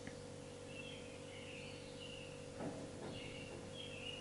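Quiet room tone with a steady low electrical hum, faint high bird chirps, and a soft knock about two and a half seconds in.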